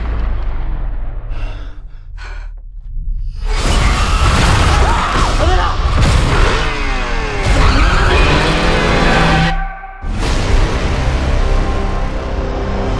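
Loud cinematic trailer score layered with sound-design effects. It dips about two seconds in, then swells dense and loud from about three and a half seconds with gliding whooshes. It cuts off abruptly near ten seconds, and a held chord comes back under the title card.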